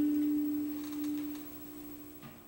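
Final ukulele note ringing out and fading away: a single plucked pitch dying down over about a second and a half as the piece ends.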